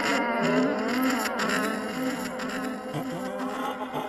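A steady buzzing drone whose pitch wavers slightly, the kind of dark ambient background music used under horror narration.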